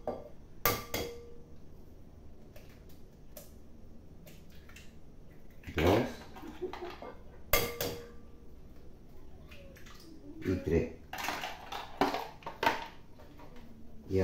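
Eggs being cracked into a glass bowl and a fork clinking against the glass: a few sharp knocks, one about a second in and another near eight seconds, with a run of lighter clatter toward the end.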